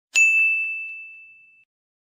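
A single bright bell ding, struck once with a high ringing tone that fades away over about a second and a half.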